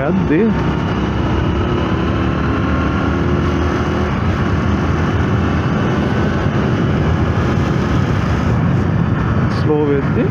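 Small commuter motorcycle engine running steadily under way, mixed with steady wind and road noise.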